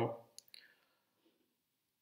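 The tail of a man's spoken word, then a single faint click about half a second in, followed by near silence.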